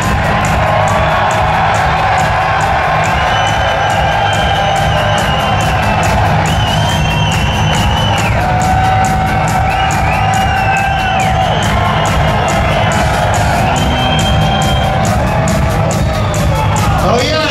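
Heavy metal band playing live through Marshall amplifier stacks: pounding drums with a steady cymbal beat, bass and held, bending electric guitar lines, with the crowd cheering and whooping.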